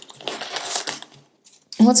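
Tarot cards being shuffled by hand, a papery rustle of cards for about the first second, then a short pause.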